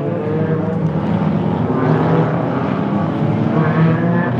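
A pack of small four-cylinder short-track race cars running together at low speed in formation, engines droning steadily, with some cars revving up in pitch about halfway through and again near the end.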